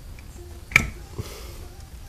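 A sharp small metal click, then a fainter tick about half a second later, from the feeler gauge being worked against the accelerator pump lever of a Holley double-pumper carburetor while the pump clearance is checked at full throttle.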